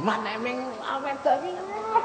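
An actor's voice through the stage sound system, drawn out and sliding up and down in pitch rather than in ordinary clipped speech.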